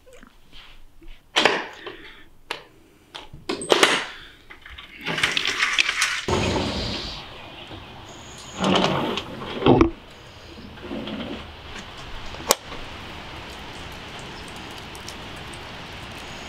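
Knocks and rustles as a sliding glass door is opened, then the steady hiss of rain outdoors, broken by a couple of louder bumps and one sharp click.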